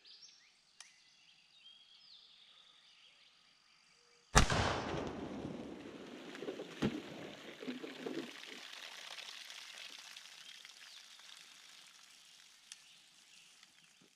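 A 10-gauge shotgun fires a single 3½-inch magnum slug about four seconds in, the loudest sound. Water then splashes and pours from the burst milk jugs, fading away over the following seconds.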